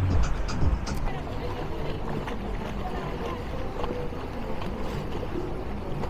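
Outboard-powered boat running on open water: a steady rush of engine, water and wind noise, with faint music and voices beneath it.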